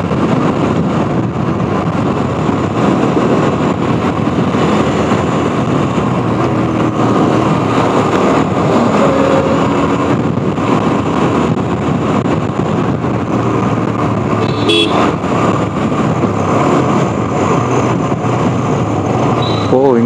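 Steady road and engine noise from inside a moving vehicle on a highway. A short high horn toot sounds about 15 seconds in.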